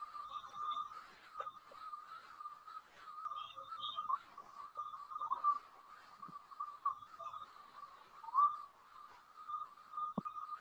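A steady high-pitched whistle-like tone that wavers slightly in pitch, with a few faint clicks.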